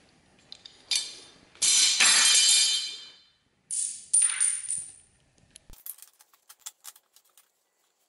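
Metal-jawed corner clamps clattering and skidding on a concrete floor twice, each clatter ringing briefly, followed by a quick run of light clicks as a clamp is handled and fitted.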